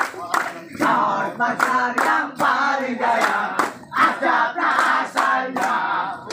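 A group of men singing a song together while clapping hands in a steady rhythm, partners slapping each other's palms in a hand-clapping game.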